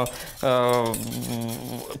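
A man's voice holding one long vowel, then a shorter, fainter one, while a wire whisk lightly clinks and swishes in a stainless steel bowl of salad dressing.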